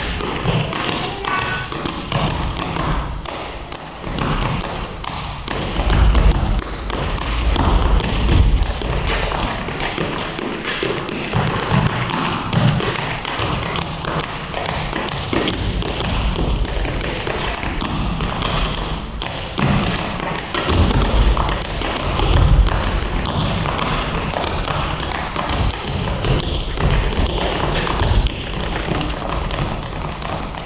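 Tap shoes on a stage floor: a tap dancer beating out continuous fast runs of sharp taps. Heavier heel drops and stomps come in clusters several times.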